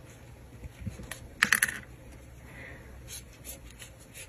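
Light clicks and ticks of a metal crochet hook working yarn, with a short cluster of sharper clicks about a second and a half in and fainter ticks later.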